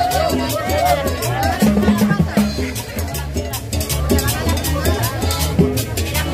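Live cumbia band playing: accordion and upright bass over a steady rhythm of high percussion strokes.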